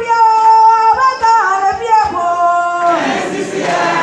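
A woman singing a worship song into a microphone over loudspeakers, holding long notes that step up and down in pitch.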